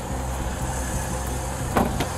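Patrol car idling, a steady low hum, with a short thump about two seconds in.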